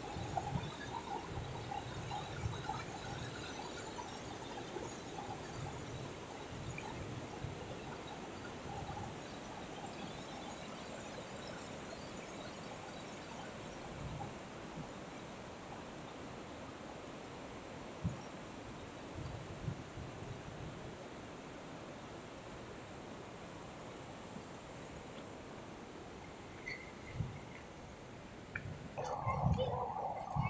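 Rushing water of the Yellowstone River's rapids, a steady even rush that grows louder near the end, with soft footfalls on the trail.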